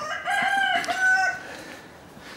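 A rooster crowing once, a single crow of about a second and a half.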